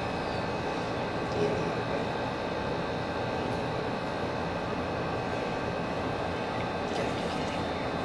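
Steady mechanical hum with several faint, high, steady tones running through it.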